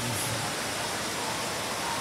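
Steady rushing of water from an indoor fountain, heard as an even hiss through a large, reverberant atrium.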